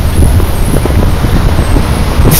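Loud, steady low rumble of street traffic.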